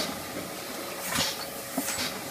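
Comadis C170T automatic tube filling machine running through its cycle: a steady mechanical background with a faint steady tone, a short hiss a little after a second in and a sharp clack just before the end, a pattern that repeats about every two seconds.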